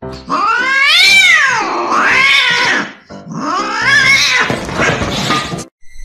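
Domestic cat yowling: two long drawn-out calls, each wavering up and down in pitch, with a brief break between them.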